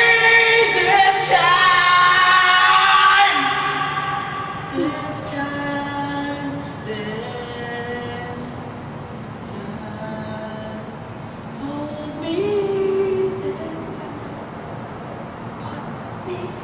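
A man singing long held notes in an empty concrete parking garage, his voice echoing off the concrete. It is loudest for the first three seconds or so, then softer sung phrases follow, with one more held note near the end.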